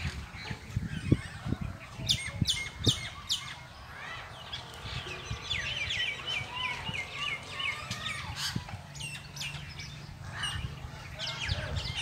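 Several birds calling, sharp repeated calls with a rapid run of chirps in the middle. Low thumps in the first few seconds and a low steady hum beneath.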